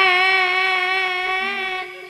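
A woman's voice, a tayub singer amplified through a microphone, holding one long sung note with no words, fading away near the end.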